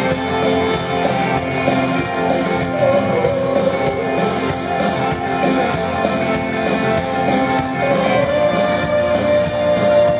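A live rock band playing a slow song: electric guitar and bass guitar over a steady drum beat, with a singer's voice.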